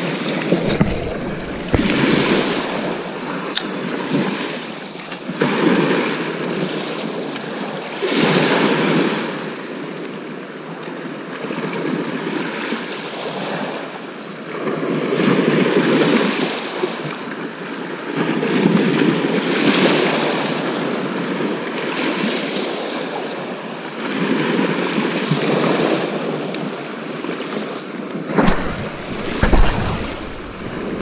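Sea waves breaking and washing up a shingle beach, the rush of water rising and falling in surges every few seconds.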